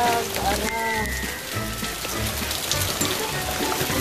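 Hail falling steadily, a dense spray of small hard ticks on the surfaces around, with music underneath.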